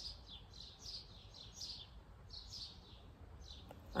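Small birds chirping faintly: a run of short, high chirps, each falling in pitch, about three or four a second with a couple of brief pauses.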